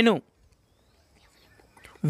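A man's voice says one word, then a pause with faint, short chirps of birds in the background.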